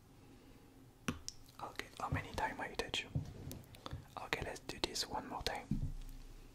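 Close-up ASMR whispering into the microphone, with sharp mouth or tapping clicks among it. It starts with a single click about a second in and runs until just before the end.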